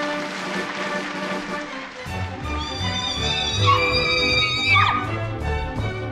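Orchestral music led by strings. About two seconds in, a heavier beat with bass comes in, and a high note is held and then slides down a little about five seconds in.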